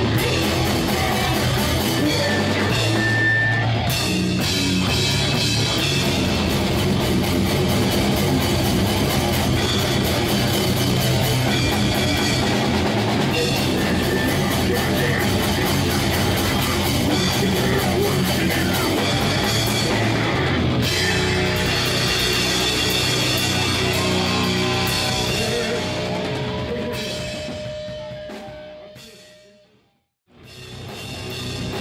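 A live heavy metal band playing, with the drum kit loud and close, alongside distorted guitars. About 25 seconds in, the music fades out to silence.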